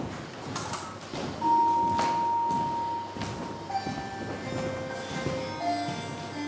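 Electronic sound from an interactive projection-globe exhibit: a few soft knocks, then one long steady tone, then a run of chime-like notes at changing pitches.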